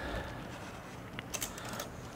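Paring knife run around the edge of a chilled flan against the wall of a steel flan pan to loosen it: faint scraping with a few light clicks of the blade on the metal in the second half.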